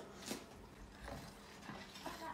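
A spoon tapping and stirring in a plastic bowl of strained hibiscus juice, quietly: one sharp tap about a third of a second in, then a few faint light sounds about a second in.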